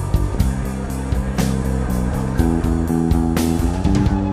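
Instrumental opening of a Greek rock song: ringing guitar chords over bass and drums, the chord moving up about halfway through, with cymbal crashes cutting in.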